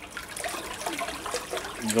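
Water churning and splashing in a barrel, stirred by the propeller of a Nissamaran 50 lb 12-volt electric trolling motor running submerged. The electric motor itself is quiet under the water noise.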